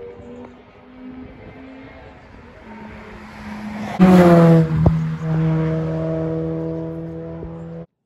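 A car passes on the road about halfway through: a rush of tyre and engine noise, louder for about a second, its pitch falling as it goes by. Under it, background music holds long sustained notes and then cuts off abruptly just before the end.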